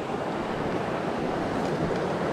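Shallow mountain stream running over rocks: a steady, even rush of water.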